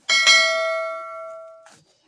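Bell-chime sound effect of a subscribe-button animation: a bright ding struck twice in quick succession, ringing out and fading for about a second and a half. It cuts off with a short click.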